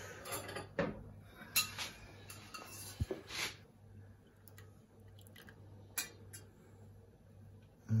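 A metal slotted spoon clinking against a stainless steel saucepan as a poached egg is lifted out of the water: a few sharp clinks in the first three or four seconds, then a single tick near the end, over a faint steady hum.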